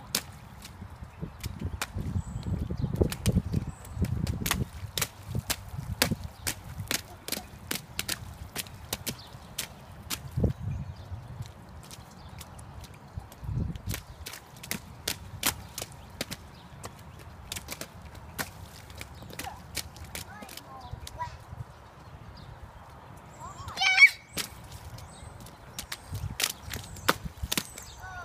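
Children in rubber rain boots stomping and splashing in a shallow rain puddle: a long, irregular run of sharp splashes and slaps on wet pavement. A short, high-pitched child's voice cuts through near the end.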